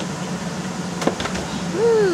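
Steady hum and rush of the electric blower that keeps an inflatable game inflated, with a single sharp click about a second in and a brief falling voice near the end.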